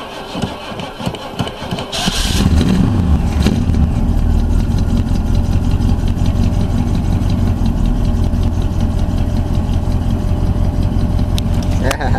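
1985 Oldsmobile Cutlass engine cranking over slowly on a weak battery in 10-degree cold, then catching about two seconds in and running steadily: a cold start.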